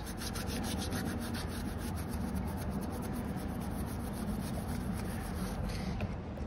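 A cloth rubbing over a car's alloy wheel in quick repeated strokes, wiping off plastic dip residue.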